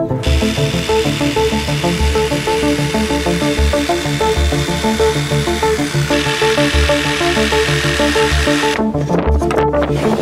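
Power tool noise over background music: a cordless drill drilling into an MDF panel, then, about six seconds in, a jigsaw cutting through MDF board. The tool noise stops near the end while the music carries on.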